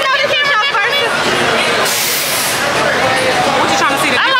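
Women talking close to the camera over background chatter, with a short hiss about two seconds in.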